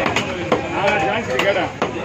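Heavy knife chopping fish fillet into chunks on a wooden chopping block: a few sharp chops, with voices talking underneath.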